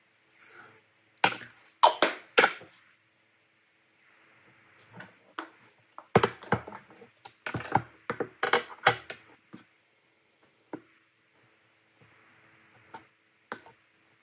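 Plastic measuring cup knocking and tapping against a plastic mixing bowl and storage container as sugar and flour are scooped and tipped in. Sharp clicks and knocks come in a cluster about a second or two in and again from about six to nine seconds in, then a few scattered taps.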